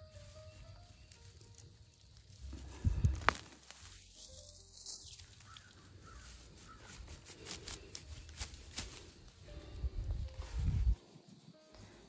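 Rustling and crackling of carrot tops and wood-chip mulch as a yellow carrot is pulled from the soil by hand. Two dull thumps come, one about three seconds in and one near the end.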